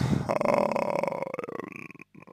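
A man's drawn-out, creaky hesitation sound ("э-э"), a low rattling drone of the voice that fades away over about two seconds.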